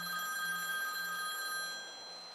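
A bell-like electronic ringing tone cuts in abruptly, cutting off the phone's spoken answer. It holds several steady pitches at once and fades out over about two seconds.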